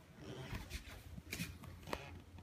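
Close rustling handling noise with two sharp clicks near the end, as the camera is brought down close to the cat.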